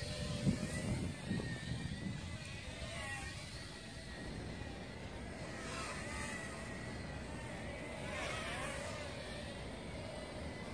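XinXun Sky Devil quadcopter's motors whining, the pitch sliding up and down again and again as the throttle changes. A low rumble sits under it in the first couple of seconds.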